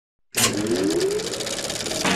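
Intro sound effect for a logo animation: it starts suddenly about a third of a second in with a bright burst, then a rapid buzzing texture with one tone rising in pitch, running straight into guitar music.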